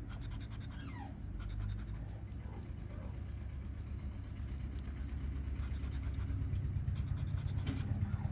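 Scratch-off lottery ticket being scratched with a handheld scraper: short dry scraping strokes over the card's coating, over a low rumble that grows louder toward the end.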